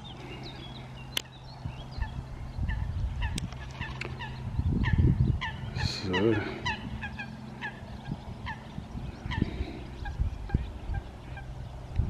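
Birds calling in a quick series of short, falling calls, about two or three a second, with a lower wavering call just past the middle. Wind rumbles on the microphone a little before the middle.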